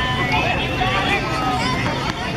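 Crowd chatter: many overlapping voices, high children's voices among them, with no single talker standing out, over a steady low hum.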